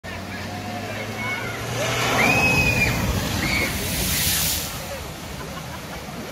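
A car driving fast into a flooded ford, with the floodwater rushing throughout. A loud splash of spray comes about four seconds in. Spectators shout and whoop in the seconds before it.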